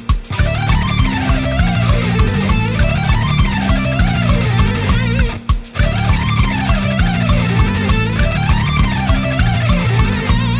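Ibanez electric guitar playing fast alternate-picked runs at 200 BPM that climb and fall in repeated zigzag patterns, over a metal backing track with drums. The playing breaks off briefly just after the start and again about halfway through, for a rest bar.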